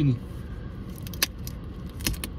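Razor blade scraping an adhesive motorway vignette off a car windscreen: faint scratching against the glass, with one sharp click a little over a second in.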